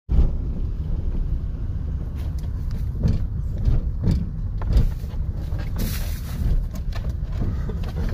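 Road noise and wind buffeting through an open side window of a moving car: a steady low rumble, with a few brief knocks and rustles.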